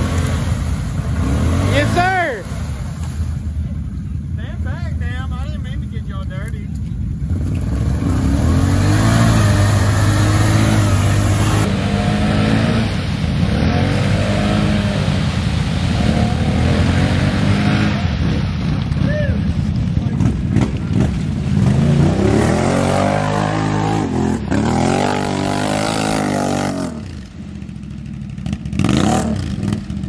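ATV engine revved hard again and again, rising and falling, as the stuck machine's tyres spin in deep mud, throwing mud.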